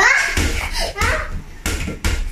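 A small toy basketball bouncing on a hard tiled floor, a few sharp thuds about half a second apart as a child dribbles it.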